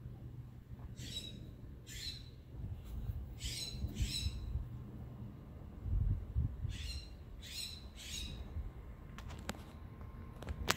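A bird giving about seven short, harsh squawking calls, spaced a second or so apart with a gap in the middle, over a low background rumble. A few sharp clicks come near the end.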